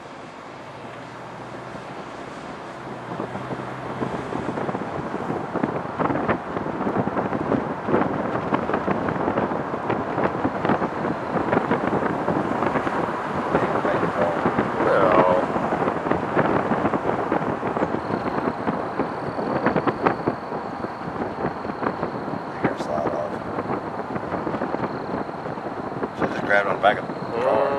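Wind buffeting the microphone with a rushing noise of movement along the road, rising over the first several seconds and then holding steady.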